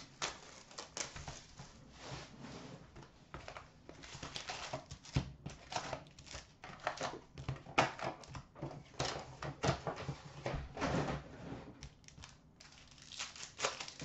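Foil wrappers of 2014-15 Upper Deck SP Authentic hockey card packs crinkling and rustling, with cardboard box handling, as the packs are taken out of the box and stacked. The crinkles and rustles come irregularly.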